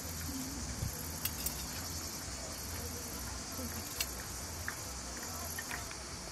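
Insects chirring steadily, with a few sharp clinks of metal cutlery against plates.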